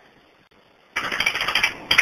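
Near silence, then from about a second in a rough, crackly noise that lasts about a second.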